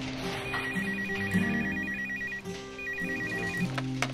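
Desk telephone ringing twice with a rapid trilling ring, and the handset is picked up at the end. Background music plays underneath.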